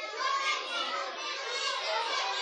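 A group of children's voices talking and calling out all at once, many overlapping into one steady chatter.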